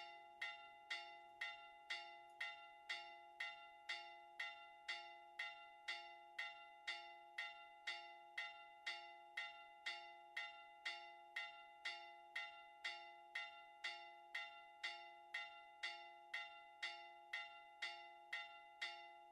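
Church bells rung in a Maltese 'simulazzjoni' (simulation) peal: an even, rapid run of strikes, about two a second, each one ringing on into the next.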